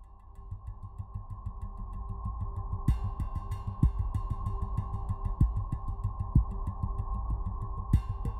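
Background music fading in from silence as a new instrumental track starts, with a low pulsing beat. Brighter, higher percussion joins about three seconds in.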